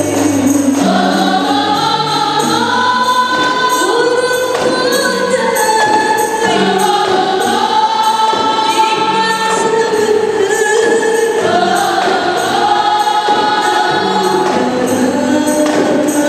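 Classical qasidah music: a women's group singing a sustained melody together, accompanied by rebana frame drums.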